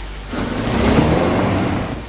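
A loud rushing whoosh, like something passing by, that swells about half a second in and fades near the end.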